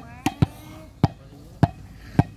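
A volleyball being struck by hand or foot, giving about five sharp slaps at uneven spacing: three in quick succession, then two more about half a second apart.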